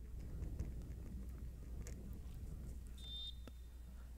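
Faint outdoor ambience with a steady low hum. About three seconds in, a short, high referee's whistle blast signals that the penalty kick may be taken.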